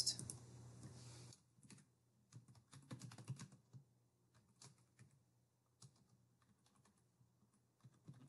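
Faint typing on a computer keyboard: a short run of keystrokes in the middle, then a few single key taps.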